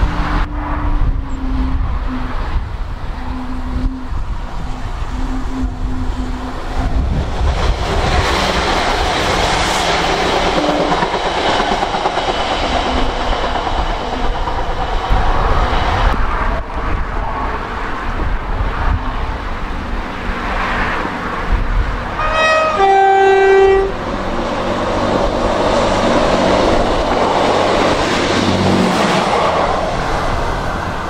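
A diesel multiple unit approaching and running past, its engine and wheel noise building from about a quarter of the way in. About three-quarters of the way through it sounds a two-tone horn, a higher note then a lower one, lasting about a second and a half.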